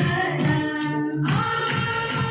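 A group of women singing together, a sustained melodic line with a brief break about a second in.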